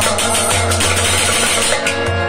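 Live Kashmiri devotional music: harmonium chords sustained under hand strokes on a tumbaknari goblet drum.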